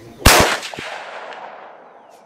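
A single shot from a Weatherby bolt-action rifle in .243 Winchester, about a quarter second in, its report trailing off in a long echo over the next second and a half.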